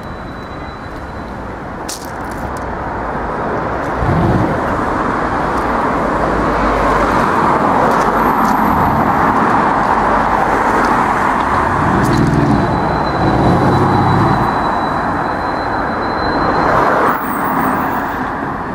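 Brabus B63-620, a tuned Mercedes-AMG G 63 with a twin-turbo V8, pulling away through city traffic. Its engine gets louder about four seconds in and stays loud until near the end, with the strongest pulls around twelve to fourteen seconds.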